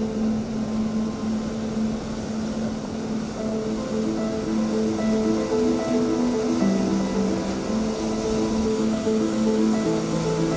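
Background music of slow, held notes over the steady rush of heavy storm surf breaking against a seawall and rocks.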